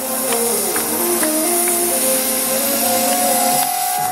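Electronic dance music from a live DJ set played loud over concert speakers, in a breakdown: a synth melody steps between notes with little bass or beat under it, over a loud steady hiss from the crowd. A higher note is held near the end.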